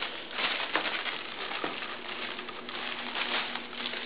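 Light rustling with a few soft taps in the first two seconds: a cat batting and scrabbling at a toy.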